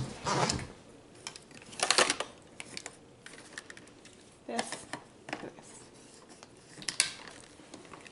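Hard plastic parts of a Dyson Cinetic DC78 canister vacuum being handled and fitted together: scattered knocks and clatter, then a sharp click near the end as a part snaps into place.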